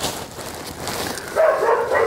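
A dog whining and yelping in short pitched cries starting about halfway through, over the crackling rustle of plastic garbage bags being rummaged through.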